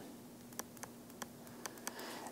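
Faint, sharp clicks of a stylus tapping on a tablet screen while handwriting, about six scattered taps, over a faint steady hum.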